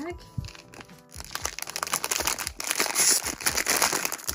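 Foil blind bag crinkling as it is handled in the hands, starting about a second in after a quieter moment.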